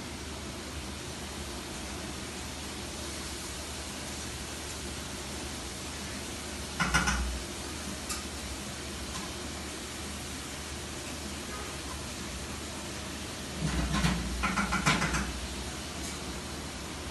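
Food frying in a pan on a gas stove: a steady, even sizzle, with a short clatter about seven seconds in and a louder spell of clattering near the end.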